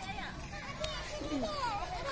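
Young children's voices, high-pitched chatter and calls, with a single sharp click a little under a second in.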